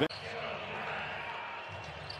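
Basketball arena ambience: a steady, low wash of court and crowd noise between stretches of play-by-play commentary.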